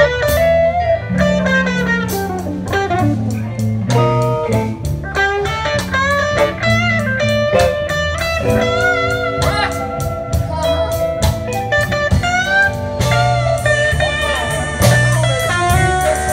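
Live electric blues band playing an instrumental passage: an electric guitar plays single-note lead lines with string bends over a low bass line and a drum kit.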